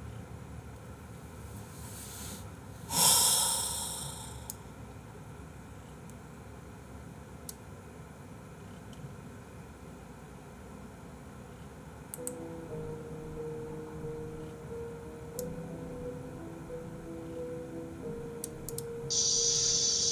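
A long quiet pause with one loud breathy exhale or sigh into the microphone about three seconds in. Soft background music with held notes comes in about twelve seconds in.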